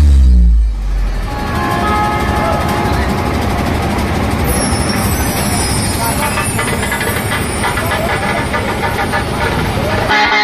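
A deep, very loud bass boom falling in pitch, then a loud, dense mix of a dhumal band's drums and amplified sound system with crowd noise.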